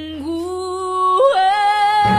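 A female voice in a song, singing long held notes that step up slightly and then leap to a high, sustained note about a second and a half in.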